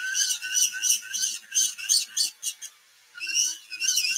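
A handheld rotary tool with a pointed carving bit grinding away the plastic of a scale figure's leg: a high-pitched whine that comes in short, uneven pulses as the bit bites and lifts. It stops briefly about three-quarters of the way through, then starts again.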